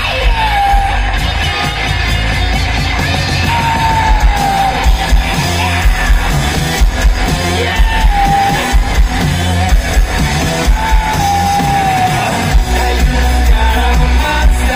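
Rock band playing live through a stage PA: electric guitars, bass guitar and drums on a steady beat, with a short falling melody line that comes back about every four seconds.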